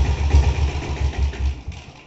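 Diesel-converted Royal Enfield Bullet's single-cylinder engine idling with a steady, pulsing low beat. It eases off near the end.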